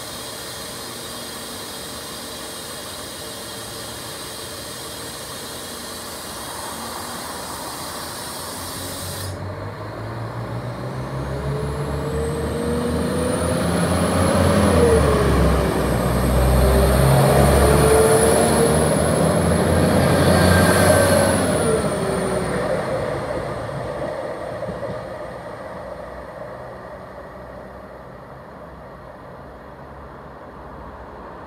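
Diesel multiple-unit train at a platform: a steady high hiss stops suddenly about nine seconds in, then the train pulls away past the microphone, its engine and transmission whine rising and gliding in pitch over a heavy rumble. The sound is loudest in the middle and fades away near the end.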